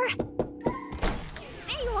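A few quick thunks in the first second, over background music.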